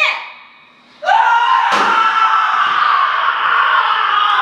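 A person screaming: one long scream that starts suddenly about a second in and slowly drops in pitch, with a sharp thump shortly after it begins.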